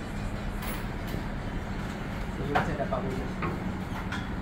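Large yeast doughnuts frying in wide woks of hot oil over gas burners: a steady low roar with a constant hum. Brief voices come in about two and a half seconds in.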